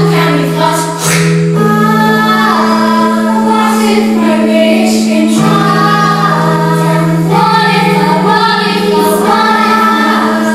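Children's choir singing a song together, over long held low accompanying notes that shift to a new pitch every couple of seconds.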